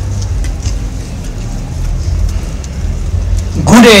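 Steady low outdoor rumble with faint scattered ticks during a pause in a speech. A man's amplified voice resumes near the end.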